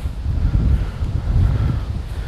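Wind buffeting the microphone: an uneven low rumble that swells and dips in gusts.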